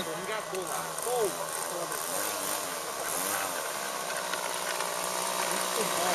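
Methanol-fuelled glow engine of an RC model Cherokee airplane idling steadily on the ground.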